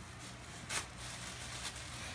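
Faint crinkling of a gift bag's wrapping as a dog noses and mouths at it, with one brief sharper crinkle a little under a second in.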